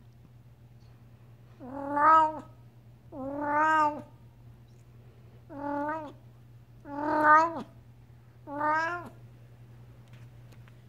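Devon Rex cat meowing five times, short pitched calls spaced roughly a second and a half apart, beginning about a second and a half in.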